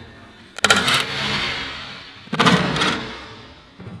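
Tesla Model 3 dashboard trim panel being pulled off, its clips snapping loose twice: once about half a second in, and again past two seconds. Each snap is followed by a short rattle and scrape of the panel.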